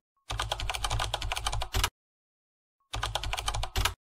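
Keyboard typing sound effect: two quick runs of key clicks, the first about a second and a half long and the second about a second, each ending in a louder final click.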